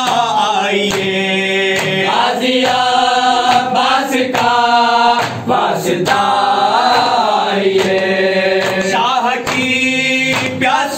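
A group of men chanting a Shia noha lament in unison, led by a reciter, on long held notes. Open hands strike chests (matam) in a regular beat under the chant.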